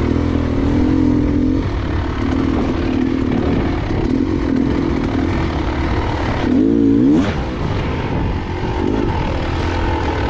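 Off-road trail motorbike engine running as it rides over a rough, muddy track, its revs shifting up and down, with a quick rise in revs about six and a half seconds in.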